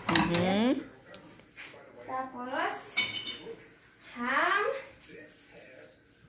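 A spatula clinking and scraping against a nonstick frying pan as egg is pushed in around the bread, with a sharp clatter about three seconds in. Three short wordless vocal sounds come in between: at the start, about two seconds in, and about four seconds in.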